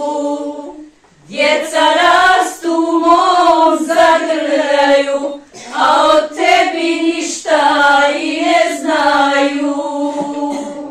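A group of women singing together unaccompanied in long held phrases. There are short pauses for breath about a second in and again about halfway through.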